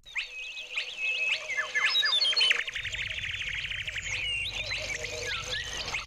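A synthetic sound-design texture of chirping, gliding high tones over a faint steady tone, played first dry. About halfway through, Ableton's OTT multiband compression preset is switched on and the texture turns denser and more squashed, with a rapid flutter and more low end brought up.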